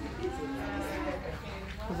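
A person's voice drawn out on one low, level note for about a second, like a long hum, with more voice starting near the end.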